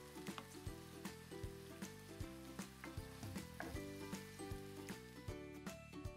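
Onion bhajiyas (gram-flour and onion fritters) sizzling as they deep-fry in hot oil, the sizzle dropping away near the end. Quiet background music with a steady beat plays along.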